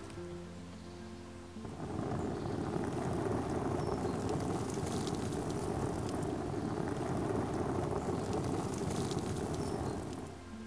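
Water falling onto an open umbrella and streaming off its edge, a steady splashing that starts about two seconds in, over soft background music.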